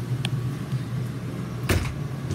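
A door being handled: a light click just after the start, then a sharp knock near the end, over a steady low hum.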